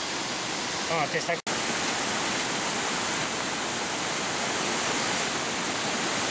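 Steady rushing of a mountain stream cascading down a rocky gorge, with a brief break about a second and a half in.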